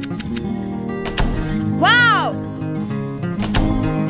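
Light cartoon background music with acoustic guitar. About halfway through, a cartoon character makes a short wordless vocal sound that rises and then falls in pitch.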